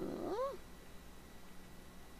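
A cat meowing once, briefly, at the start: a short call that rises and then falls in pitch.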